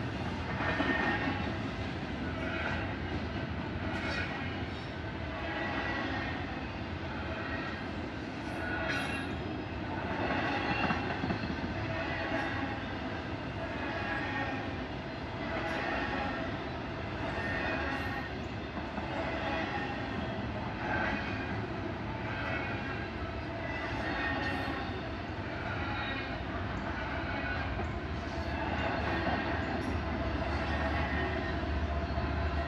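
Freight train of double-stack container cars rolling past with a steady rumble and a rhythmic clatter from the wheels, repeating about every one and a half to two seconds.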